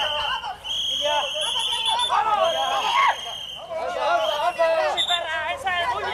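A high-pitched whistle blown in two long blasts of about a second each in the first four seconds, with the end of another just at the start, over many voices calling out around a dog-show ring.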